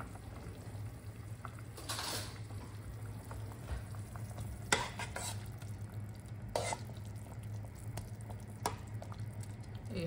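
A ladle stirring vegetable broth in a stainless steel pot, with a few scattered clinks and scrapes of metal on the pot over a steady low hum.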